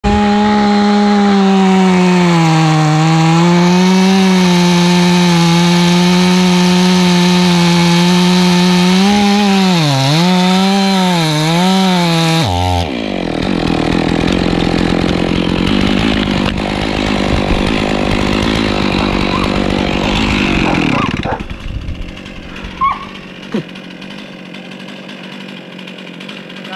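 Gas chainsaw cutting through a large oak trunk at full throttle. Its pitch dips and recovers several times as the chain bogs in the cut. About halfway through the sound changes abruptly to a lower, rougher running, then drops away to a quieter level with a few knocks.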